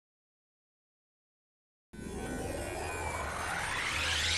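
Total silence for about two seconds, then an electronic music riser starts suddenly: a synthesized whooshing sweep climbing steadily in pitch over a steady low bass note, growing louder.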